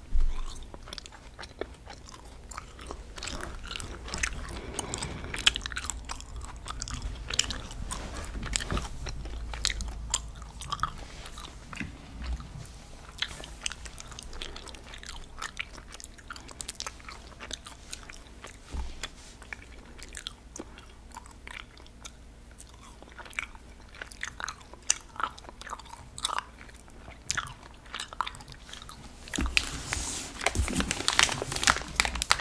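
Close-miked chewing of sour gummy worms: a bite just after the start, then a steady run of sticky, wet mouth clicks and smacks.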